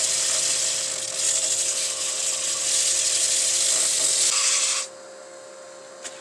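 80-grit sanding pad held against a black walnut bowl spinning on a wood lathe: a steady rough rasping hiss that stops sharply near the end as the pad is lifted off. A steady hum runs underneath, the lathe turning at about 735 rpm, slower than the turner wants for sanding.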